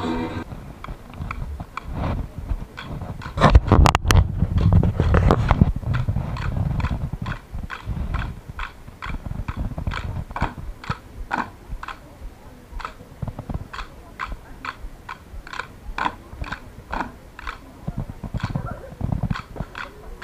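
Steady rhythmic knocking, about two beats a second, keeping time for a folk dance. About four seconds in, a louder low rumble covers it for a couple of seconds.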